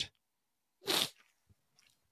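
A man's single short breath, drawn in close to a microphone about a second in.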